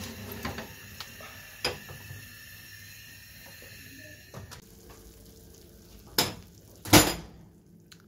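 Metal roasting tray and oven rack clattering and scraping as the tray is handled, with two loud knocks near the end as the tray is set down.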